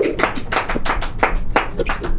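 Hands clapping in a quick, even run of sharp claps, about seven a second, welcoming a new arrival.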